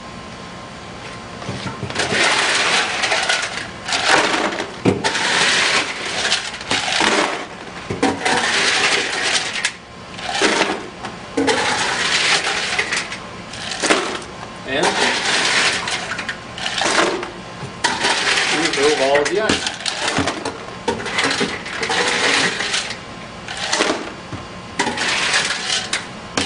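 Half-dice ice cubes being scooped out of an ice machine's bin with a plastic scoop and dumped into a plastic bucket, over and over. Each scoop and pour gives a rattling, clinking rush of cubes, one every second or two.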